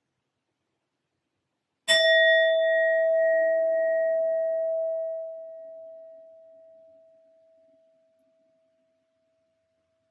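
A metal singing bowl struck once with a wooden striker about two seconds in. It rings with a clear tone and higher overtones that fade slowly over several seconds, leaving a faint lingering hum.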